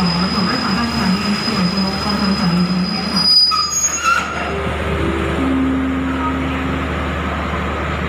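Passenger train coaches rolling slowly into a station, wheels and brakes squealing on a steady high note that stops about four seconds in. Lower tones then step down in pitch as the train comes to a stop, over a constant low hum.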